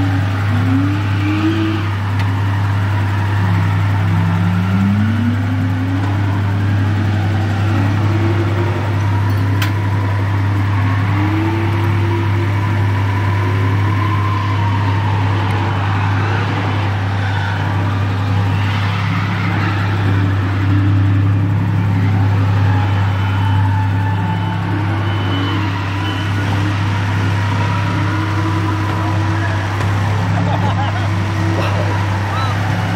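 A steady engine drone runs throughout, with car engines revving over it, their pitch climbing and levelling off again and again.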